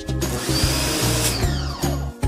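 Sun Joe SPX3000 electric pressure washer running with a hissing spray and a high whine. About a second and a half in, its motor winds down with a falling pitch, as the Total Stop system cuts the pump when the trigger is released.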